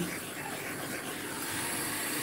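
Handheld torch running with a steady hiss as its flame is swept over wet acrylic pour paint to pop the bubbles on the surface.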